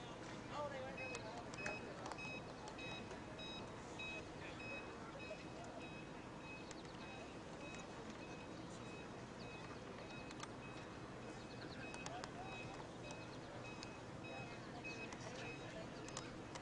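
A run of short, evenly spaced high-pitched electronic beeps, starting about a second in and stopping near the end, over faint distant voices and open-air background.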